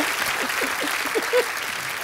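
Studio audience applauding, the clapping slowly dying down.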